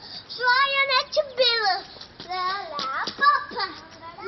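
A young child's high voice singing in sliding sing-song phrases, with several held, wavering notes and no clear words.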